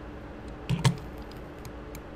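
Light clicks of a computer keyboard and mouse at the desk, with one louder short knock a little under a second in and a few faint clicks after it, over a faint steady hum.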